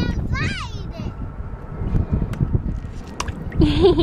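A small child's high voice gliding up and down briefly about half a second in, and a voice again near the end, over a ragged low rumble of wind on the microphone. There are a couple of sharp clicks in between.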